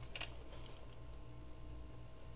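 Light handling of a plastic RC transmitter in the hands, with one short click about a quarter second in, over a steady low room hum.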